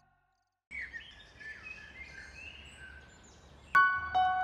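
Silence for a moment, then birds chirping over a low outdoor background noise. Near the end a sudden struck musical note rings on, starting background music.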